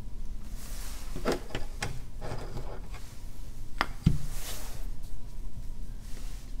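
Desk items being handled: a few light clicks and knocks, a louder knock about four seconds in, and short rustles of paper.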